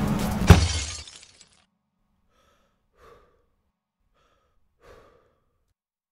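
A punch lands with one sharp crash of breaking glass about half a second in, cutting off loud music. The crash rings out for about half a second, then near silence with a few faint short sounds.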